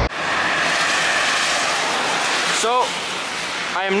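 Steady rushing noise of highway traffic going past, with a brief voice about two-thirds of the way in and again at the very end.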